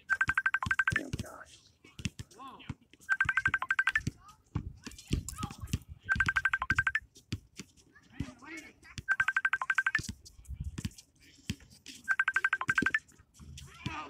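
A phone ringing with an electronic trill: bursts about a second long of rapid high beeps, repeating about every three seconds, five times over.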